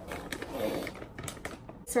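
Close rustling of clothing and handling, broken by several small sharp clicks, as someone reaches right up against the recording device.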